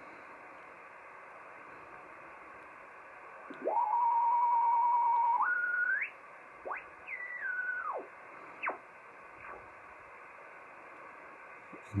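Yaesu FT-991A receiver's speaker on the 15 m band in upper sideband: a steady background hiss of band noise, with a carrier's whistle heard as the dial is tuned across it. The whistle starts about four seconds in, rises, holds with a slight warble, steps up in pitch, then slides down several times before fading near nine seconds.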